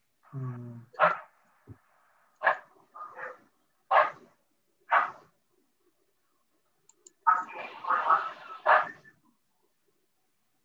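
A dog barking: short single barks about a second apart, then a denser run of barks near the end.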